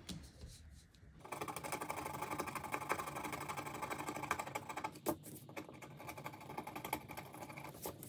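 Rapid, steady scratching on paper, starting about a second in and stopping just before the end, with a sharp click about five seconds in.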